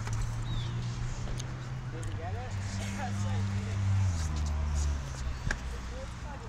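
Stunt scooter's polyurethane wheels rolling on concrete, a steady low hum that shifts pitch a couple of times and eases off after about five seconds as the scooter comes to rest.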